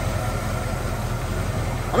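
Ford 289 V8 with a two-barrel carburetor idling steadily, its low rumble coming through a dual exhaust system.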